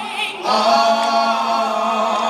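Gospel vocal ensemble singing held chords in harmony. About half a second in, the voices briefly drop out, then come back in together.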